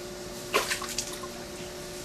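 A toddler's hands splashing and slapping in a basin of water, with a few sharper splashes about half a second in and again around one second.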